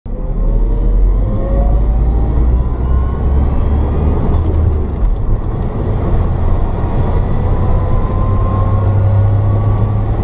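In-cabin sound of an electric-converted 1976 Datsun 280Z on the move, with a heavy, steady road and wind rumble. Over it is a faint whine from the electric drivetrain that rises slowly in pitch as the car gathers speed.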